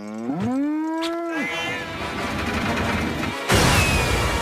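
A cartoon cow's long moo, rising in pitch, held, then dropping off about a second and a half in. A rumble follows, then a sudden loud crash of a stone bridge collapsing near the end.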